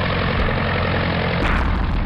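Propeller aircraft engines droning steadily under a heavy rushing noise, muffled like an old film soundtrack.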